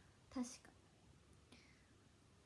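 One short spoken word, "tashika", a little way in; otherwise near silence: room tone.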